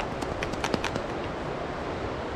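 A small plastic powder bottle shaken to dust powder out, giving a quick run of light clicks and taps in the first second, over a steady hiss of outdoor noise.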